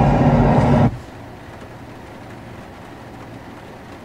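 Engine drone from a farming video played back through the truck radio's speakers, loud and steady, cutting off abruptly about a second in. After that only a quiet, steady low hum remains.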